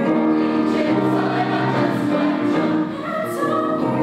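Mixed choir singing in parts, holding chords that shift every second or so.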